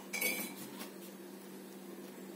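A brief clink about a quarter of a second in, with a short ring, then a fainter tick, over a steady low hum.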